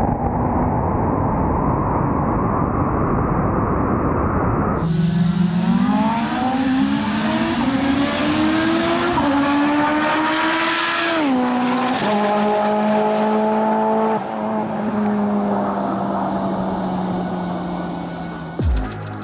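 Mitsubishi Lancer Evolution IX's turbocharged 4G63 four-cylinder at full throttle down a drag strip. First comes loud wind and engine noise on the car itself; then the engine note climbs in pitch through a couple of quick gear changes and fades slowly as the car runs away down the track.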